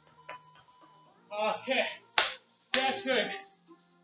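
Workout background music with a voice in it, in two phrases, and a single sharp clap-like hit about two seconds in.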